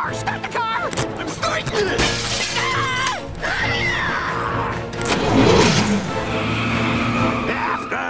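Cartoon action soundtrack: characters screaming and yelling over music, with several crashing impacts and breaking glass around a car.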